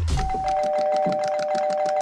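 Doorbell held down continuously, sounding a steady two-pitch electronic tone without a break, starting a fraction of a second in.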